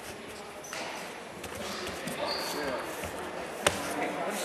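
Voices of several people murmuring in a large, echoing hall, with one sharp slap or thud about three and a half seconds in.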